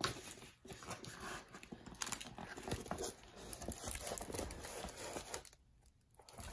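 Faint, irregular rustling and crinkling of plastic film and paper as a rolled diamond-painting canvas is handled and unrolled on a table.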